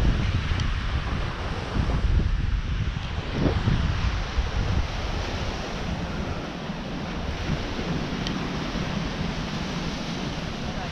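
Wind buffeting the microphone over a steady wash of ocean surf. The low wind rumble is heaviest in the first few seconds, then settles.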